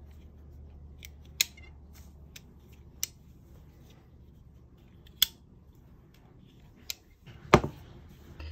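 Sharp metal clicks from a Leatherman multi-tool being handled, its steel parts snapping, a few single clicks one to two seconds apart. Near the end comes a heavier, louder knock as a tool is set down on the table.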